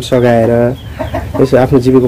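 A woman speaking, with a few short bird calls in a brief pause about a second in.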